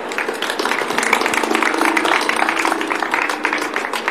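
Audience applauding, a dense stream of claps.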